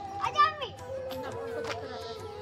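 Children's voices at play, with one child's loud, high-pitched shout about half a second in.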